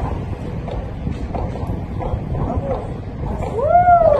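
Steady wind noise on the microphone. Near the end comes a loud, short pitched call that rises and then falls.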